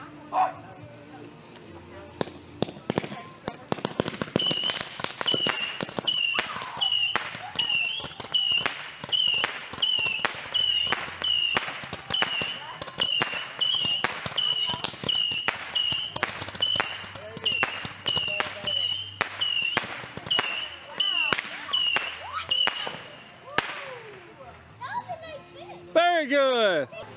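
Consumer aerial fireworks firing shot after shot, about one a second for some twenty seconds. Each shot is a sharp report followed by a brief high whistle-like tone. The volley stops a couple of seconds before the end.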